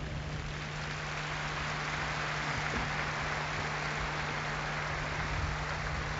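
A large crowd applauding, a steady even clatter of many hands that holds for the whole pause in the speech.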